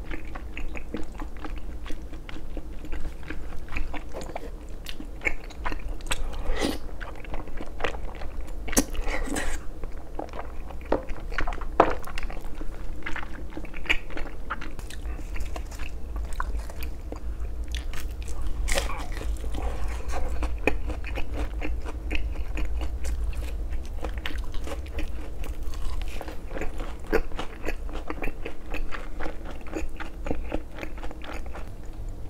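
Close-miked mukbang eating: chewing of rosé tteokbokki and bites into crispy Korean fried foods such as a battered vegetable fritter, with a steady run of small wet chewing clicks and several louder crackling crunches of fried batter.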